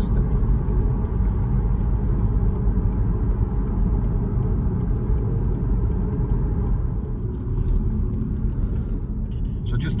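Steady low road rumble heard inside a car's cabin at dual-carriageway speed: tyre and engine noise of the moving car.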